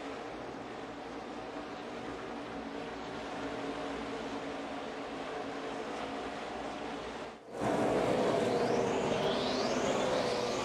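NASCAR Xfinity stock cars' V8 engines running at speed on the oval, first as a steady drone of the field. After a brief break about three quarters of the way in, the sound is louder, with engine pitch rising and falling as cars pass close by.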